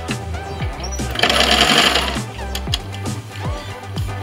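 Electric sewing machine stitching in one short run of about a second, starting a little over a second in, over background music with a steady beat.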